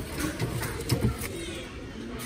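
Wooden plate racks knocking together as one is pulled out of a bin of them: several light hollow knocks, the loudest about a second in.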